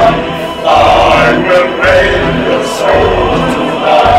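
A song: several young male voices singing together over a backing track with a pulsing bass beat.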